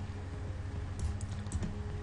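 A few light clicks from computer input at the desk, about a second in and again near the end, over a steady low hum.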